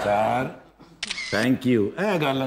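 A phone camera's shutter click about a second in, as a selfie is taken, between bits of a man's speech.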